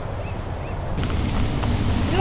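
Wind buffeting the microphone: a steady low rumble that gets a little louder about a second in.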